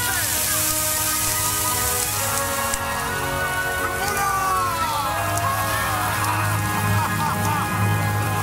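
Film soundtrack playing in the church sanctuary: rain falling, with music and people's voices crying out. The rain hiss is heavy for the first few seconds and then eases, while the voices and the music's low notes grow stronger towards the end.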